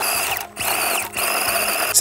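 Axial SCX24 mini RC crawler's small electric motor and gear drive whining under load as it strains at a gravel ledge it cannot climb. The whine drops out briefly twice, about half a second and about a second in, as the throttle comes off and on again.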